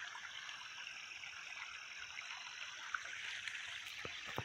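Irrigation water flowing faintly and steadily along a soil furrow, with a couple of small ticks near the end.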